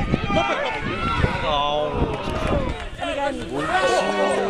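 Several voices shouting and calling over one another at once, loud and overlapping, as players and spectators at a football match react to play.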